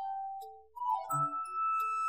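Background music: a slow melody of bell-like chiming notes, each held for about half a second to a second, over short low bass notes.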